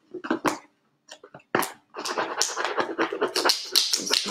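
Very sticky transfer tape being peeled up off a vinyl decal, a dense crackling rip over the last two seconds. It is preceded by a few light clicks and a sharp tap from handling the plastic container.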